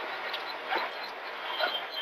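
In-cabin sound of a Renault Clio Rally4 rally car, its turbocharged four-cylinder engine and road noise heard muffled inside the car as it brakes for a tight left bend. A steady high whine joins in about one and a half seconds in.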